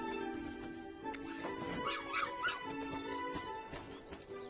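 A puppy gives three short high yips about two seconds in, over background music with held notes.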